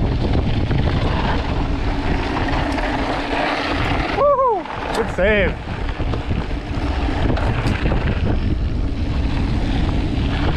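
Wind buffeting the microphone while a mountain bike's tyres roll over a gravel dirt road. About four seconds in come two short pitched sounds, a second apart, each rising and then falling.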